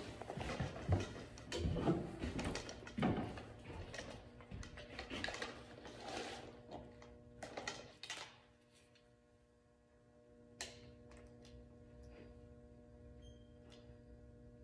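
Rustling and knocks from archery gear being handled, a back-tension release and a compound bow, with scattered clicks for the first eight seconds. After that only a few faint sharp clicks sound over a low steady hum.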